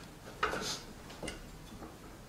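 A pause in the music with no instrument sounding: a few soft clicks and rustles of handling noise, the loudest about half a second in.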